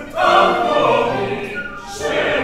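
Several operatic voices singing together in an ensemble passage. A loud phrase enters just after the start and fades towards the end.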